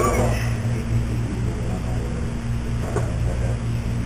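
Steady low room hum in a meeting room, with a brief blurred sound at the start and a single faint click about three seconds in.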